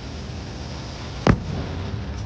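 A single loud bang from an aerial firework shell bursting, a little over a second in, with a short echo trailing after it over a steady background.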